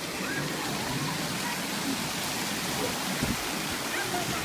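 Steady rush of running water at a swimming pool, with faint voices in the background.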